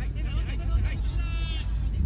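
Players' voices shouting across a soccer pitch during play, with one drawn-out call about a second in. Under them is a heavy, steady low rumble of wind on the microphone.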